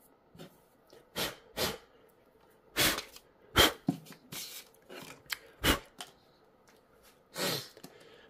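Hands handling a rubbery mesh non-slip mat and a phone on a wooden tabletop: a series of short, separate scuffs and rustles, about a dozen spread over the seconds.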